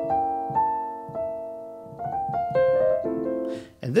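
Piano playing a held B-flat diminished major seventh chord, voiced so that it works as a C dominant seventh with a flat ninth and thirteenth. Single notes are added above it in a short line, about half a second, one, two and three seconds in, and the sound dies away near the end.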